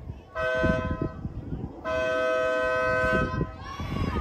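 A car horn honks twice, a two-note blare: first a blast of under a second, then a longer one of about a second and a half.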